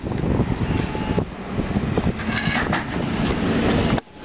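Wind buffeting an outdoor camera microphone, an uneven low rumble, with a few light knocks over it.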